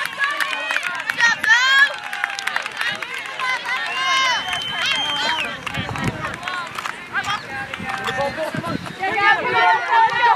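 Many overlapping high voices of girls and young women shouting and calling across an open field, with one long, high held tone lasting about a second and a half, about four seconds in.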